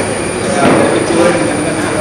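Background chatter of people in a large hall: a steady hubbub with faint voices and a thin, steady high-pitched whine.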